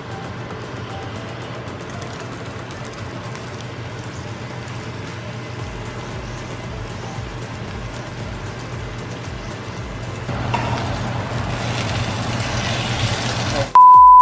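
Soft background music over a steady low hum. From about ten seconds in, cheesy potato hash sizzles louder in a cast iron skillet as it is stirred. A steady high censor-style beep starts right at the end.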